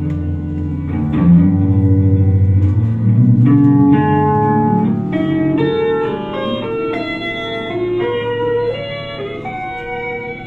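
Solo electric guitar playing held, ringing notes: low, heavy notes in the first half, then a higher melodic line of single notes from about halfway, growing quieter near the end.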